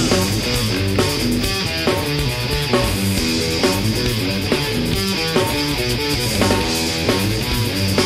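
Hardcore punk band playing: distorted electric guitar riff over bass and drums at a driving, steady beat, with no vocals in this passage.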